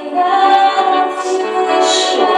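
Paiwan women singing a slow worship song in long, held notes.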